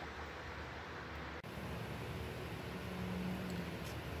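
Faint, steady background hiss, with a sudden change in its character about a second and a half in. A faint low hum sounds for about a second near the end.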